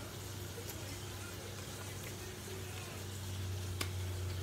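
Steady low hum under a faint hiss, with a single sharp click near the end.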